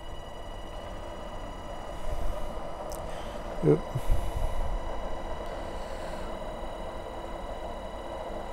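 Electric pulse motor and its driver circuit running after being switched on, giving a steady high whine with overtones over a low hum. There are low handling bumps about two and four seconds in.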